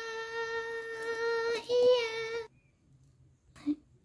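A high, childlike singing voice holding one long note with a slight waver, breaking briefly and lifting a little near two seconds in, then cutting off about halfway through. After that, near silence with a short faint sound near the end.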